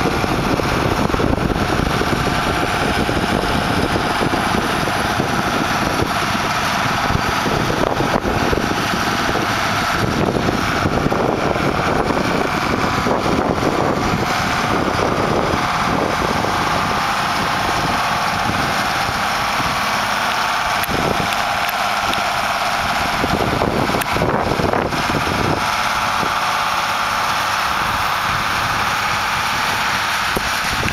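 Case 2090 tractor's six-cylinder diesel engine running steadily under load as it pulls a field cultivator through the soil, with wind buffeting the microphone in gusts.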